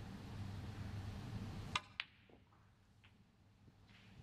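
A snooker cue tip strikes the cue ball with a sharp click, and about a quarter of a second later a second crisp click comes as the ball hits. A fainter click follows about a second after that.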